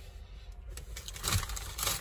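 Rustling and scraping as fries are handled in their paper packaging, in short bursts that grow busier in the second half.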